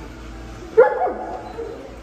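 A dog barks once, a single short, loud bark about a second in that drops in pitch.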